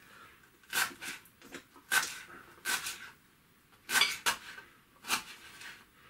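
Kitchen knife chopping fresh coriander on a wooden cutting board: sharp knocks of the blade against the board, spaced irregularly about a second apart.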